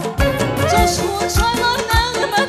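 Live Azerbaijani folk ensemble playing an instrumental passage: a melody line over a steady drum beat, a little under two strokes a second. A woman's singing voice comes in at the very end.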